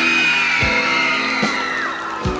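Opening of a live song on acoustic guitar, with a chord ringing and two low beats. A long high tone over it rises slightly, then falls away near the end.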